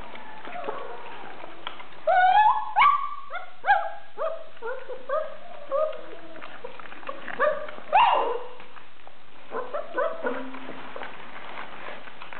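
Puppies yelping and whining. A quick run of short, high cries starts about two seconds in and trails off into softer whimpers, then comes a louder yelp about two-thirds of the way through and a few soft cries after it.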